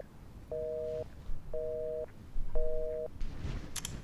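Telephone busy signal heard through a phone handset: a two-tone beep that sounds for half a second and stops for half a second, three times. The line is engaged, so the call does not go through.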